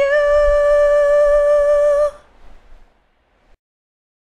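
A lone unaccompanied voice holding the song's final note steady for about two seconds, then stopping. A faint hiss trails on for about another second before the sound cuts to complete silence.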